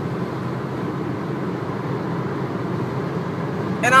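Steady rumble inside a car's cabin, engine and road noise with no distinct events. A voice starts again right at the end.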